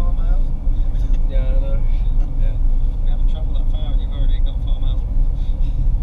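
Car driving along a road, heard from inside the cabin: a steady low rumble of engine and road noise throughout, with faint indistinct voices over it.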